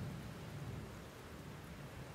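A pause between piano phrases: no notes sound, only a faint low rumble and hiss from the recording, with a slight low bump right at the start.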